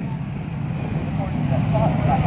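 Motorcycle engines running steadily in the background as a low, continuous hum, with faint distant voices.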